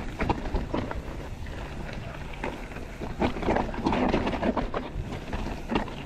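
Mountain bike riding down a rocky trail: tyres rolling and knocking over rocks with the bike rattling, under a steady rush of wind on the camera microphone.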